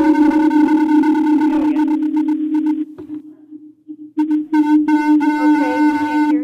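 Audio feedback on a remote call line through the meeting's sound system: a loud, steady pitched howl with overtones. It fades and drops out about three seconds in, comes back about a second later and stops just after the end. This is the echo ("reverb") on the remote participant's connection that garbles her speech.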